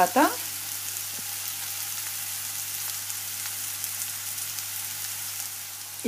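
Bottle gourd cubes sizzling steadily in hot oil in a frying pan, with faint scattered crackles.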